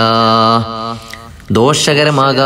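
A man's voice chanting in a drawn-out, melodic style. He holds one long steady note, breaks off just under a second in, and resumes with gliding pitch about a second and a half in.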